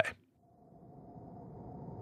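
A gap of dead silence, then a faint hum with a single steady tone that slowly swells in level.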